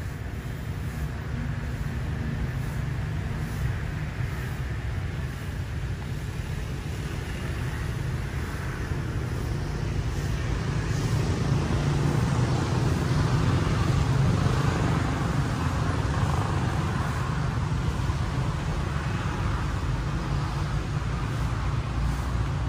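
Steady outdoor city traffic noise with a deep low rumble and no distinct single vehicle, growing somewhat louder about halfway through.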